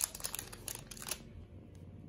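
Small clear plastic bag crinkling in the hands, a run of quick crackles in the first second that then dies down to a faint rustle.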